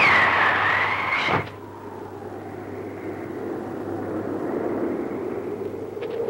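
Film sound effect: a loud whistling whoosh, falling in pitch and then held, cut off by a sharp hit about a second and a half in. A quieter, low, steady rushing drone follows.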